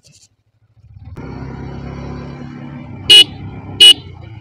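Yamaha R15 V4's single-cylinder engine starts running steadily about a second in as the bike rides off. Near the end, two short, loud honks of the motorcycle's horn come under a second apart.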